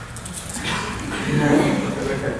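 A person laughing, starting about half a second in and growing louder.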